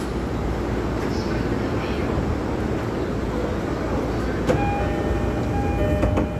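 Steady noise of a commuter train standing at a platform with its doors open. About four and a half seconds in, a click is followed by the train's electronic door chime, a repeating tone that signals the doors are closing.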